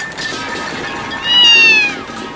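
A drawn-out, high meow-like cry, loudest in the second half, rising briefly and then falling slowly in pitch.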